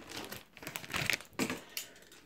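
Plastic packaging of a trading-card starter pack crinkling as a hand handles it, in short irregular crackles.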